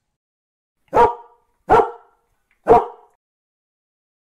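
A dog barking three times, in short single barks spaced under a second apart.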